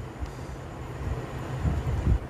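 A steady low background rumble with faint hiss, and a couple of dull low thumps near the end.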